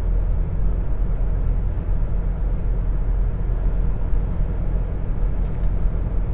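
Car cabin noise while driving at speed: a steady low rumble of engine and tyres on the road.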